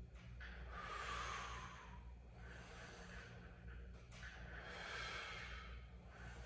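A man breathing hard through exercise reps: three long breaths, each about a second and a half, over a steady low hum.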